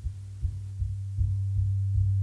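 A low drone with a few faint higher tones above it, pulsing irregularly two or three times a second, in the closing stretch of a recorded song.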